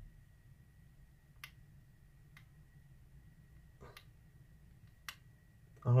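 A few faint, sharp taps and clicks from a plastic nail art pen being handled and dabbed on paper, spaced about a second apart, over quiet room tone with a faint steady high whine.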